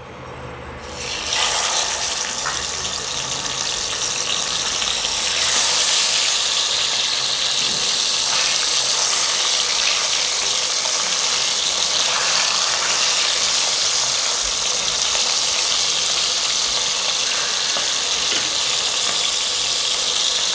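Whole pomfret fish sizzling as they fry in hot oil in a pot, with a wooden spatula moving them. The sizzle starts about a second in as the fish go into the oil and gets louder about five seconds in, then holds steady.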